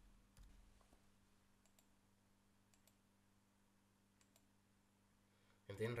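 Faint computer keyboard keystrokes and mouse clicks: a few quick clicks in the first second, then sparse single clicks, over a faint steady low hum.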